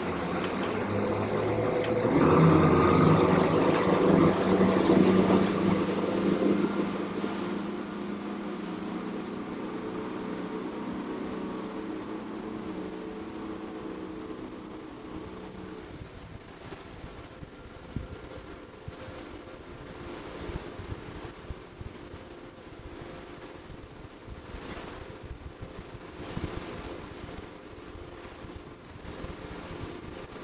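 Outboard power of a 34-foot Hydra-Sport center console running hard under way, a steady engine drone that is loudest for the first several seconds. The drone then fades down under a steady rush of wind and water as the boat runs at speed.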